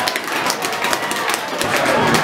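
Ambient sound of a football match from the stands: a small crowd's distant voices with many short sharp claps and knocks.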